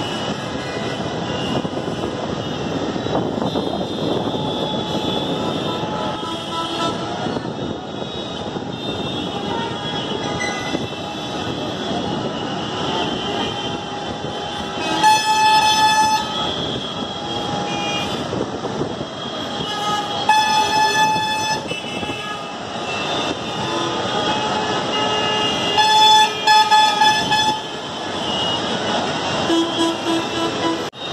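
Busy road traffic of buses and auto-rickshaws, a steady engine and road hum with frequent vehicle horns. Long, loud horn blasts come about halfway through, again around two-thirds of the way, and near the end.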